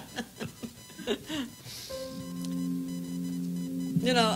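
Roland digital keyboard holding a sustained chord, several steady tones starting about halfway through as a song intro.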